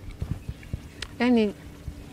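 A single short spoken syllable from a voice about a second in, between stretches of scattered faint clicks and taps, over a faint steady hum.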